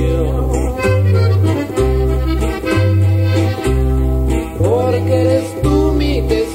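Instrumental passage of a norteño song: accordion playing the melody over a bass and guitar accompaniment, with a bass note about once a second.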